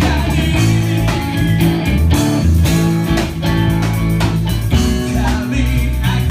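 Live rock band playing loudly: electric guitars and bass over a steady drum beat, with a voice singing.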